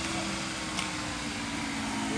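Steady hum of a motor vehicle's engine running, with a brief click a little under a second in.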